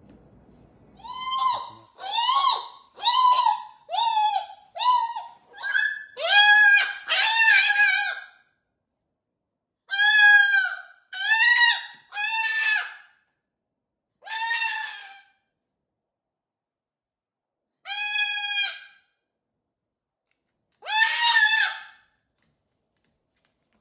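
Moluccan cockatoo giving a string of short, laugh-like calls, each rising and falling in pitch. About nine come in a quick run over the first eight seconds, then they thin out to single calls a few seconds apart.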